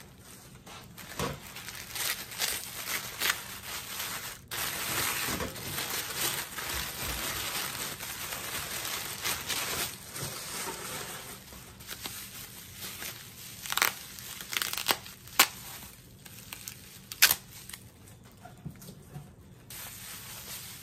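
Wrapping crinkling and rustling as an item is unwrapped by hand. The rustling is steady through the middle, then a few sharp, louder crackles come later on.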